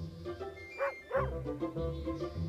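A sheepdog barking twice, in short yips falling in pitch about a second in, over background music.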